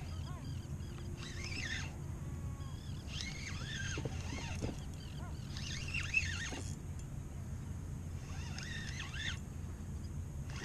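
Repeated bursts of high, sliding bird calls, a cluster every second or two, over a low steady rumble of wind and water.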